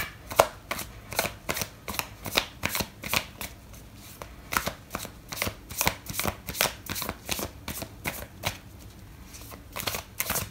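A deck of tarot cards being shuffled by hand: an irregular run of sharp card clicks and flutters, several a second, easing off briefly near the end.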